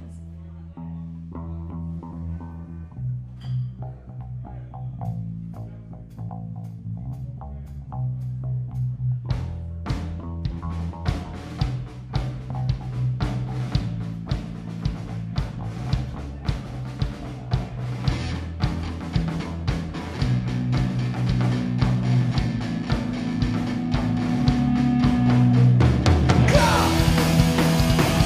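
Live punk rock band starting a song: an electric bass riff opens it, drums come in with a steady beat about ten seconds in, and the band grows steadily louder.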